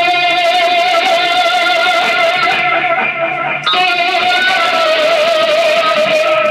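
Live experimental noise music: a loud, distorted, amplified drone holds one pitch with a slight waver over a low pulsing tone. It breaks off briefly about three and a half seconds in, then returns at the same pitch.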